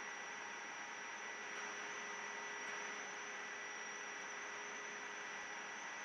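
Faint, steady hiss with a thin electrical hum and a high whine running under it: the background noise of the recording setup.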